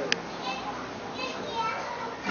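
Faint children's voices in the background, a few short high calls, over steady room noise, with a sharp click right at the start.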